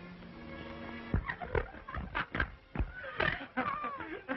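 Soundtrack music for about the first second, then a quick run of short, uneven animal-like vocal sounds, some sliding in pitch.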